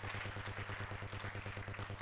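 Quiet pause filled by a steady low electrical hum, with faint room noise above it.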